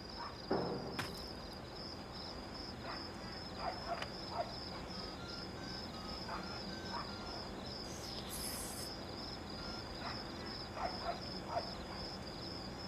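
Crickets chirping steadily as a faint, high, finely pulsed trill, with a few soft clicks and a brief hiss about eight seconds in.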